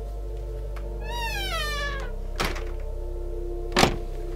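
A drawn-out squeal falling in pitch over about a second, then two thuds, the second louder and near the end, over steady background music.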